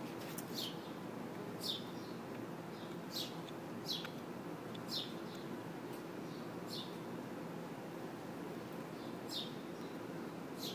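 A bird chirping: short high chirps, each sliding quickly down in pitch, repeated every second or two over a steady low background hum.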